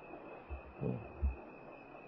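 A pause in a man's talk: two soft low thumps, about half a second and a second and a quarter in, with a brief faint murmur of voice between them, over steady recording hiss and a faint high whine.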